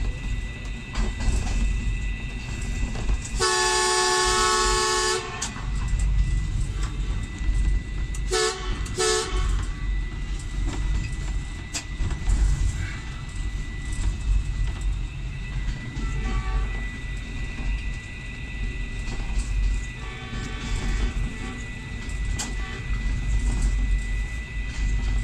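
Diesel trains running side by side with a steady low rumble. A train horn sounds one long blast about three seconds in, then two short toots around eight to nine seconds, and fainter horn sounds follow later.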